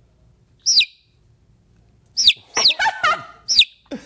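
Bird chirping played as a recorded sound effect: about five short whistled calls, each falling in pitch. The first comes alone about a second in, and the rest follow in a quick run over the last two seconds.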